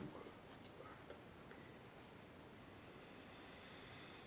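Near silence: room tone with a few faint ticks in the first second or so.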